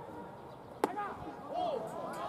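A hardball pitch smacking into the catcher's mitt: one sharp, loud pop a little under a second in. Drawn-out shouted calls from voices around the field come before and after it.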